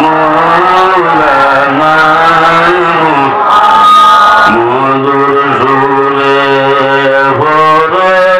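A man singing a slow devotional chant into a microphone, holding long notes that slide between pitches, with a short break in the held notes about halfway through.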